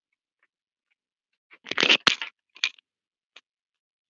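After silence, a burst of scratchy rustling with a sharp click in it lasts about three quarters of a second near the middle, followed by two short clicks.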